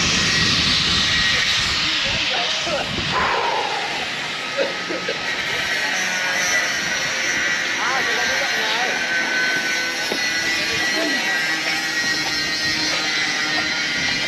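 Angle grinder running steadily: a high, hissing whine that holds one pitch.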